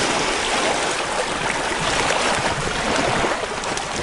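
Shallow sea water washing over a rocky limestone shoreline, a steady hiss without a break.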